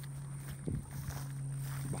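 Footsteps through tall grass and clover, with one soft step about two-thirds of a second in, over a steady low hum and a faint high steady whine.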